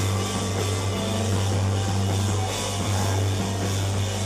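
Live electronic rock band playing loud and full: a heavy, steady synthesizer bass under drums and electric guitar.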